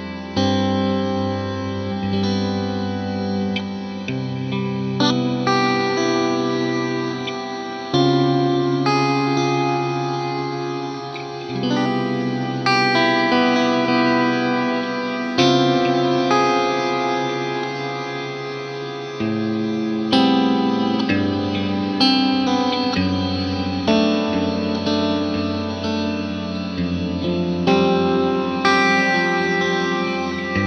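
Electric guitar played through an Old Blood Noise Endeavors Dark Star Pad Reverb pedal: slow chords, a new one every few seconds, each ringing on into a dense, sustained pad-like reverb wash, as if a synth pad were playing along behind the guitar.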